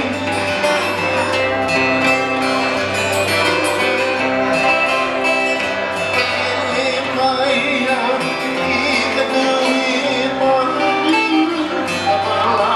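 Live Hawaiian slack-key acoustic guitar with steel guitar and a second guitar playing a slow song, over a steady bass line.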